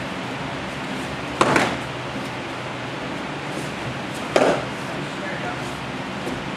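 Two sharp smacks of sparring sticks landing, about three seconds apart, over a steady hiss of room noise.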